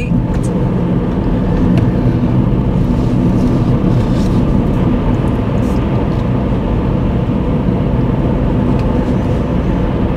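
Car engine and road noise heard from inside the cabin while driving along at a steady pace, a continuous low rumble.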